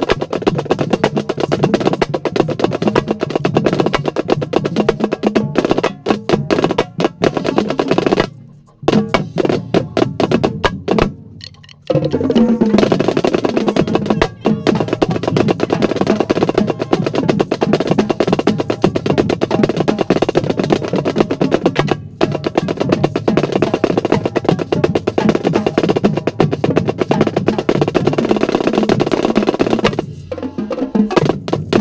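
Marching snare drum heard close up, played with other drums of a drumline: loud, rapid stick strokes and rolls. The playing drops away for a few seconds about eight seconds in, then comes back in full at about twelve seconds.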